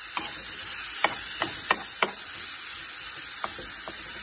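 Ground beef and onion sizzling in a frying pan, with a metal spoon stirring and breaking up the meat, clicking sharply against the pan several times.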